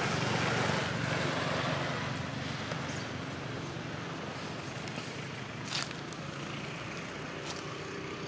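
A motor vehicle's engine running steadily with a low hum, loudest at first and slowly fading, with a short sharp click about six seconds in.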